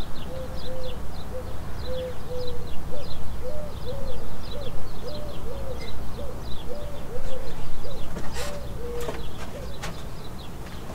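Birds calling: a steady series of short, low coos, about two a second, with fainter high chirps over them and a low background rumble. A few sharp clicks come near the end.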